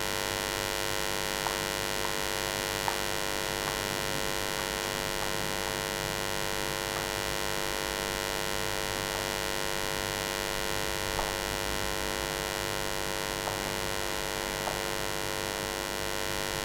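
Steady electrical mains hum in the recording, with a few faint, short ticks of chalk tapping on a blackboard as a diagram is drawn.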